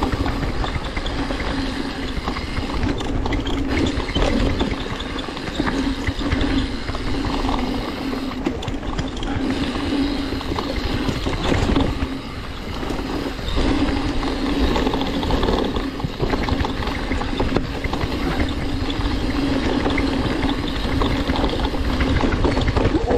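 Mountain bike riding fast down a dirt forest trail: continuous tyre noise over the ground with frequent rattles and knocks from the bike, and a steady buzz that drops out briefly a few times. Heavy wind rumble on the camera microphone.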